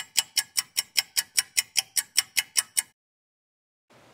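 Ticking timer sound effect, sharp even ticks about five a second for roughly three seconds, then stopping abruptly: the countdown for the three seconds allowed to memorize the letters.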